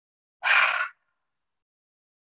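A woman's single short, audible breath, about half a second long, a little after the start, taken during a deep-breathing exercise.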